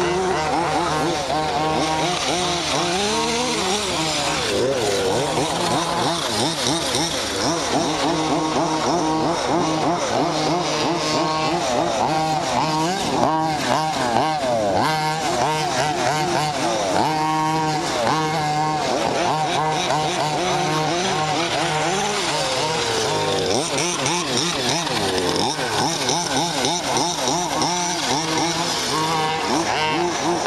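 Two-stroke petrol engines of 1/5-scale RC cars running and revving up and down, their high buzzing pitches rising and falling and overlapping as the cars accelerate and slow around the track.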